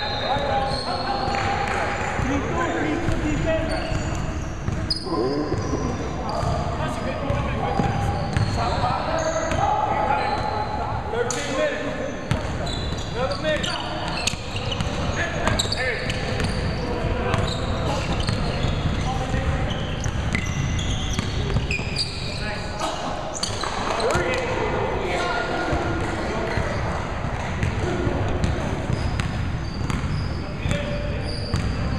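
Indoor basketball game in a large, echoing gym: a ball bouncing on the hardwood floor, with footsteps and players' indistinct voices.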